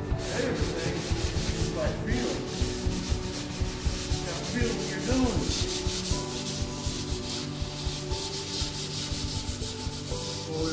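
Hand sanding with a sanding pad on flat wood panels, lightly scuffing the dried first coat of clear finish smooth before the second coat. It is a continuous rasping rub made of quick back-and-forth strokes.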